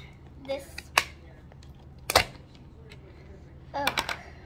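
Two sharp plastic knocks about a second apart, the second a heavier thump, from a plastic tub and its lid being handled on a table, with a few faint ticks between.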